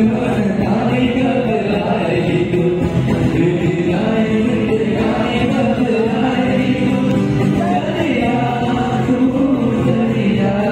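Live band performing a Bollywood old-and-new song mashup: male voices singing into microphones over acoustic and electric guitars and keyboard.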